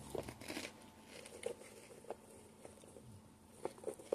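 Faint rustling and small scattered clicks of a plastic snack tub being handled.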